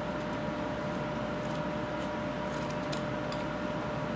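Faint scattered clicks from knife work and handling of a small whittled wooden ball-in-cage, the wood being trimmed inside the cage bars so the ball can move, over a steady background hum with a faint even tone.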